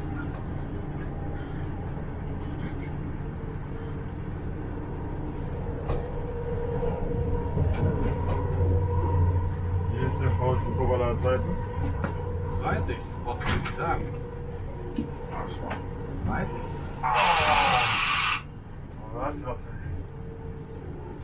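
Diesel regional train running on a single-track line, heard from the driver's cab: a steady low rumble that grows louder for a few seconds in the middle, with scattered clicks from the wheels and track. About 17 seconds in, a loud hiss lasts just over a second.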